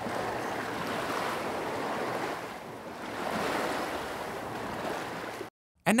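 Recorded ocean waves washing onto a beach: a steady rush of surf that swells and eases, cutting off suddenly about half a second before the end.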